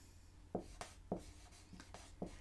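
Dry-erase marker writing on a whiteboard: a faint run of about five short strokes.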